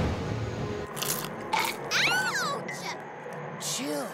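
Background music that stops about a second in, followed by several short crunches of cartoon characters munching popcorn, with a brief high wavering squeak in the middle.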